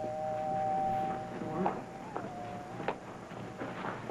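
Two-note doorbell chime ringing on with two steady tones, which fade about two seconds in after a brief waver. A single click follows near three seconds in.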